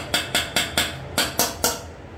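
A metal mesh strainer knocked repeatedly against the rim of a metal pot to shake out the last of the drained pasta: about eight sharp metallic knocks in quick succession, with a short pause near the middle.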